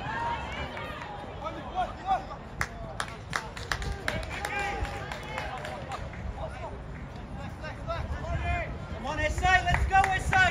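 Players and spectators shouting and calling out across an outdoor football pitch, the voices getting louder near the end, with a few sharp knocks about three seconds in.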